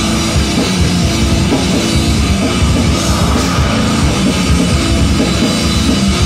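Live goregrind band playing at full volume: distorted electric guitar over fast, dense drumming, loud and unbroken.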